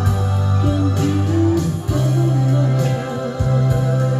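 A woman singing into a microphone through a PA system over accompaniment with sustained organ-like keyboard chords, a bass line and a steady beat.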